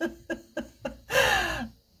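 A person laughing: a run of short chuckles, then a louder, breathier laugh with a falling pitch just past the middle.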